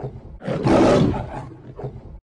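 A recorded lion roar, swelling quickly and then fading away over about a second.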